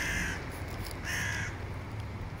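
A bird calling twice: two harsh, grating calls of about half a second each, roughly a second apart.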